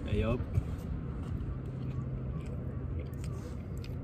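A person chewing a mouthful of rehydrated freeze-dried macaroni, with faint scattered mouth clicks over a steady low hum.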